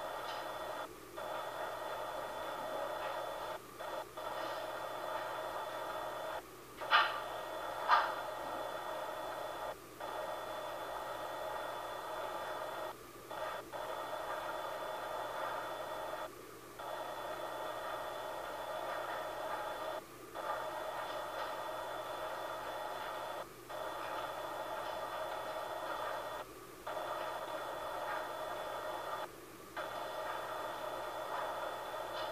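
A video monitor's speaker giving out a steady electronic hiss and hum with a few held tones. The sound cuts out briefly about every three seconds. Two short, sharp sounds come a second apart about seven seconds in.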